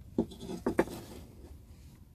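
A few light taps and knocks, four of them within the first second, with no saw motor running: cut pieces and the next workpiece being handled on the mitre saw's table between cuts.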